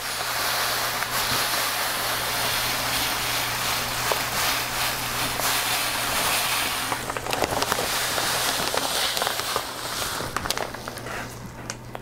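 Black aquarium sand poured from a bag into a glass nano tank: a steady hiss of falling sand for about seven seconds, then broken-up trickles with scattered small ticks as the pour eases off.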